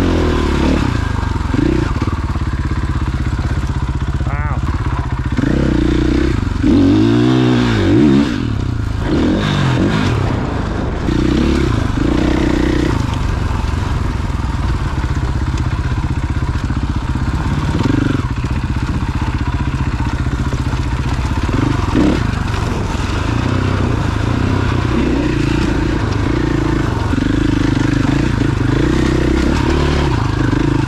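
Dirt bike engine running steadily under the rider, its pitch rising and falling as the throttle is worked, with a run of quick revs about six to nine seconds in.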